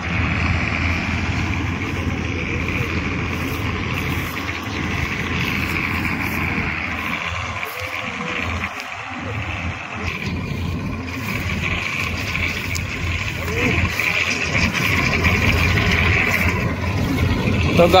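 Combine harvester running steadily as it cuts ripe wheat: a continuous engine drone with a higher, steady whirring over it.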